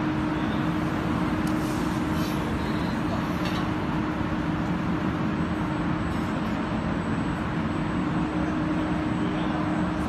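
Foam sheet cutting machine running steadily, with a constant low hum under even mechanical noise. A few faint light ticks come about two to three seconds in.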